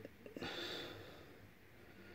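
A faint breath, a soft exhale close to the microphone about half a second in, then quiet room tone.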